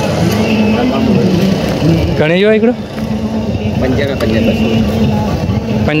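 People's voices talking, with a man's short exclamation about two seconds in, over a steady low hum.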